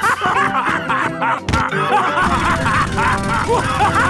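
Cartoon characters laughing together over background music.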